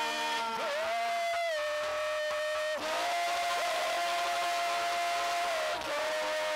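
Live worship singing: a voice holds two long sung notes, each sliding up slightly into pitch, over a band accompaniment.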